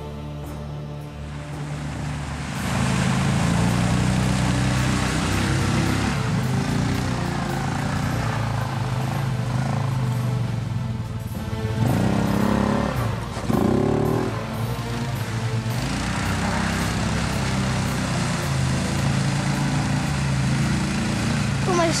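ATV engine running and revving, with the tyres splashing through water and slush. The revs rise and fall twice about halfway through. Background music is heard in the first two seconds.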